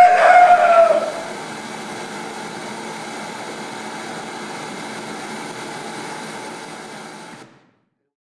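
A single loud, drawn-out cry lasting about a second, rising at its start and falling away at its end. It is followed by a steady even noise that cuts off abruptly near the end.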